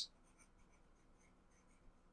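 Near silence, with faint scratching of a stylus writing on a drawing tablet.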